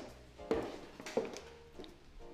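Footsteps on a hard floor, two steps about two-thirds of a second apart, with soft background music under them.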